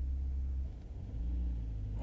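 Low steady rumble of a car cabin on the move, engine and road noise, dipping briefly about a second in.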